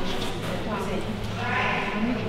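Flat-coated retriever whining in high-pitched calls: a couple of short ones, then a longer one in the second half, over voices in the hall.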